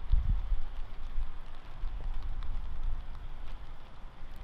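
Outdoor wind rumbling on the microphone, an irregular low rumble with a faint hiss and a few faint scattered ticks.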